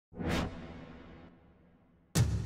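Whoosh sound effect for a logo intro: a quick rush swells and falls within half a second, leaving a low rumble that fades away over the next second and a half.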